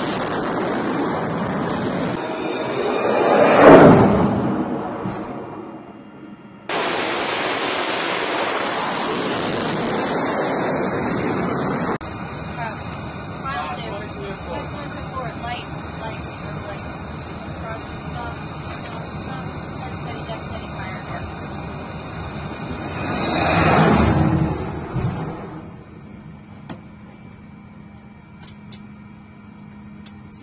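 Jet engine noise on a carrier flight deck during catapult launches. It swells to a loud peak about four seconds in and fades, and swells and fades again a little after twenty seconds as another jet launches, heard more muffled from inside the catapult control station.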